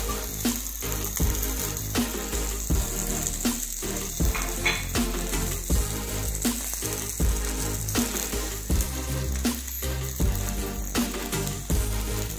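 Semolina-coated mackerel fillets sizzling as they shallow-fry in oil on a flat tawa, under background music with a steady beat.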